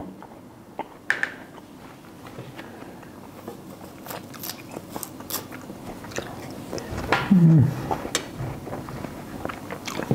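A man biting into and chewing slices of Tashkent 'torpedo' melon, its firm flesh crunching, which he judges slightly underripe. There is a short hum of his voice about seven seconds in.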